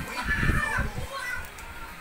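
Children's voices, with a short high call that falls in pitch about half a second in.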